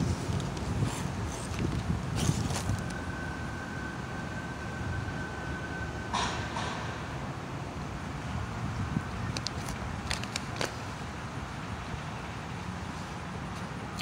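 Steady low outdoor background rumble with a few faint clicks, and a thin steady tone through part of the first half.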